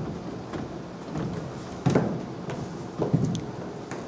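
Stage noise during a scene change: dull thumps from footsteps and furniture on a wooden stage floor, with the two loudest about two seconds and three seconds in, over low shuffling.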